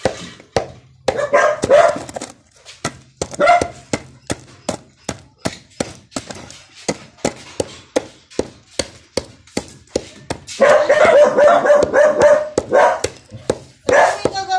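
A pestle pounding in a mortar, crushing lumps of kamangyan resin and incense toward a powder: sharp knocks about two to three a second. A dog barks now and then, with a longer run of barking near the end.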